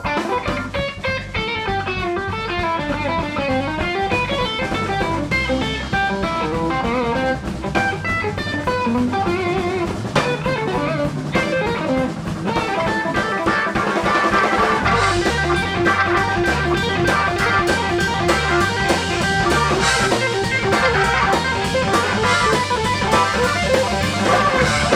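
Live band playing an instrumental rock jam: electric guitar melody lines over electric bass and drum kit. Sustained organ chords fill in and the music gets a little louder from about halfway through.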